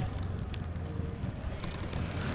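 Street ambience in a narrow lane: the low, steady hum of motor scooter traffic passing nearby.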